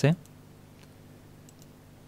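A few faint clicks from the computer being operated, the clearest about one and a half seconds in, over a low steady hum from the recording.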